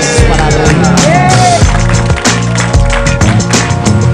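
Loud music with a heavy bass beat and regular drum hits, and a singing voice in the first half.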